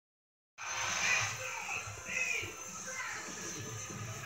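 Live hip-hop concert broadcast playing from a television's speakers: music with voices, picked up in the room. It cuts in about half a second in, after a moment of silence.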